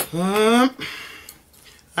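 A man's voice holds a drawn-out vowel, rising in pitch, for under a second. Then there is faint handling noise with a small click.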